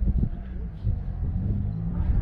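A low, steady rumble.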